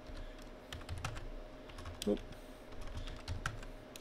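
Computer keyboard being typed on: irregular, quiet key clicks, a few at a time.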